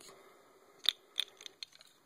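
Plastic Lego pieces being handled: two sharp clicks about a second in, a third of a second apart, then a few faint ticks, as a small drop package is worked free from the side of the model.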